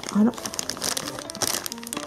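Thin clear plastic bag crinkling as hands squeeze and shift a lump of white clay inside it: an irregular run of crackles.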